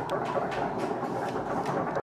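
A lecture-hall audience applauding: a dense, even clatter of many hands that starts abruptly and cuts off at the end.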